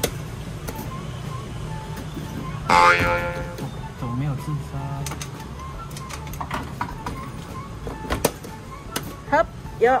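Claw machine in play: the machine's background music over a steady low hum, with several sharp clicks near the end.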